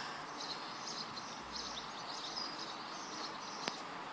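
Faint outdoor background noise with distant birds chirping now and then, and a single light click near the end.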